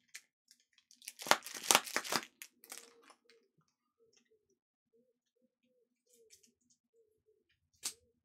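Foil booster-pack wrappers crinkling in a loud burst about a second in, lasting about a second and a half, followed by faint, sparse handling sounds and a short click near the end.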